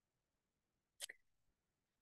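Near silence, with one brief faint sound about a second in.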